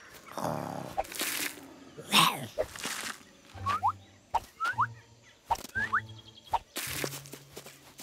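Cartoon sound effects: two swishes in the first few seconds, then three short chirping glides, each set over a low note, and a longer low note near the end.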